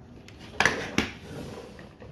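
Plastic toy car being handled and set down on a tabletop: two sharp knocks, about half a second apart, over faint scraping.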